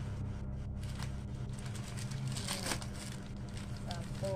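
Plastic packaging rustling and crinkling as a strip of sachets is handled and pulled from a plastic bag, loudest about two and a half seconds in, over a steady low hum.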